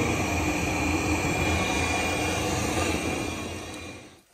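Dunkirk DCC 150 gas boiler firing: the steady rumbling rush of the burner and combustion blower, with a faint high whine, fading out near the end.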